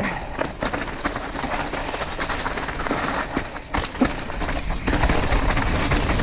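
Mountain bike rolling downhill over a dirt and rock trail: steady tyre noise on the ground with a constant rattle of chain and frame as it goes over bumps.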